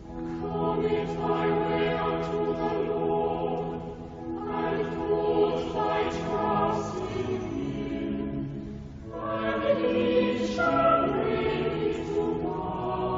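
Choir singing a chanted canticle in held chords. The phrases last a few seconds, with short breaks about four seconds in and again about nine seconds in.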